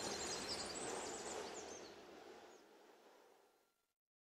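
Outdoor background noise with faint high chirps in the first second or so, fading out steadily to near silence about three seconds in.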